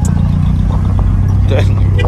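A pickup truck's engine and exhaust running with a loud, steady low drone, with people's voices over it.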